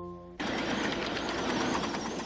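A sustained music chord cuts off about half a second in and gives way to the noisy running of a ride-on scale live-steam locomotive on its track.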